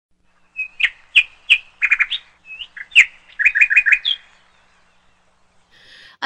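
A small bird chirping: short, high chirps, some single and some in quick runs of three or four, for the first few seconds.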